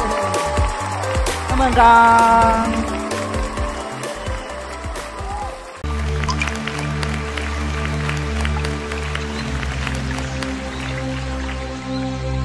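Studio audience applauding and cheering over a music cue for the first couple of seconds. About six seconds in, a soft, slow instrumental intro begins suddenly: sustained low tones under sparse, tinkling plucked notes.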